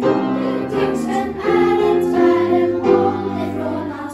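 A children's choir of school-age singers singing together, holding some notes.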